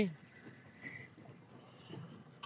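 Quiet open-water background on a small boat: faint wind and water noise, with one brief faint high chirp about a second in.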